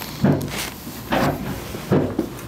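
Short, low vocal sounds from a person, murmurs or grunts without clear words, with a breathy noise about a second in.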